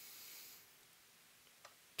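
Near silence: room tone, with a faint hiss in the first half-second and one small click near the end.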